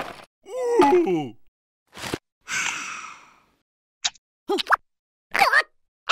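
Cartoon character's wordless voice effects, separated by silence: a groan falling in pitch about a second in, a breathy sigh-like exhale, then a click and two short yelps near the end.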